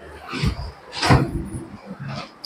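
Two dull footstep thumps about half a second apart, made by someone walking quickly across a hard floor.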